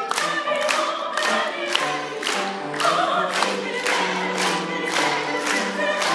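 Live singing with musical accompaniment, and the audience clapping along on the beat, about three claps a second.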